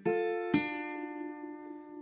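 Acoustic guitar playing the end of a D minor riff: one pluck at the start and another about half a second later, the notes then ringing on and slowly fading.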